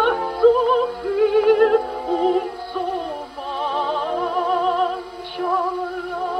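A recorded soprano singing a German art song, her held notes in a wide vibrato, played from a 78 rpm record on an HMV 130 gramophone. The sound is thin, with no high treble.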